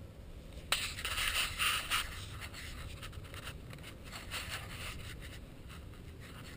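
Scraping and rustling right on an action camera's housing as it is handled and repositioned, loudest in a scratchy burst about a second in, then smaller rubbing sounds.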